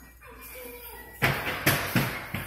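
Dull thumps on a wooden play structure, likely footsteps on its hollow plywood platform: three knocks about half a second apart in the second half.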